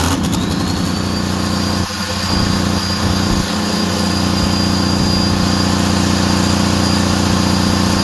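John Deere 6068 6.8-litre inline-six turbo diesel idling steadily just after a cold start, with a brief dip in the sound about two seconds in. A high thin whine rises over the first second and then holds steady above the engine note.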